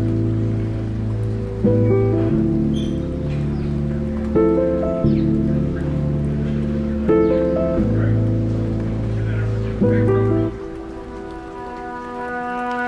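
Background music: sustained chords over a low bass line, with a new chord coming in about every two and a half to three seconds and a softer passage near the end.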